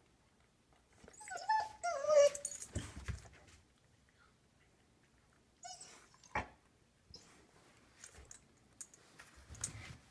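Dog whining in short cries that fall in pitch, loudest a second or two in. Then quieter scuffing and a single sharp click about six seconds in.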